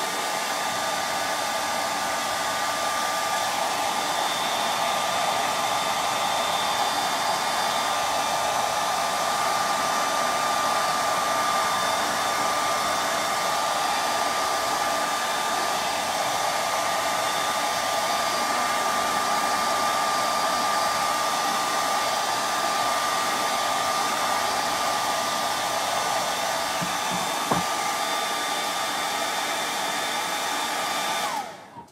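Handheld hair dryer running steadily at close range, blowing on wet paint on a canvas to dry it. A loud even rush of air with a steady whine on top.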